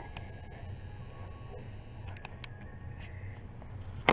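Quiet room tone with a steady low hum, and a few faint clicks as the camera is handled and shifted on the bed, mostly in the second half.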